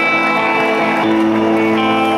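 Live rock band with an electric guitar playing a slow line of held notes over bass and backing.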